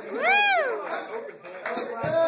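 A man's voice gives a short wordless sliding note that rises and then falls, about half a second long, followed by quieter broken vocal sounds.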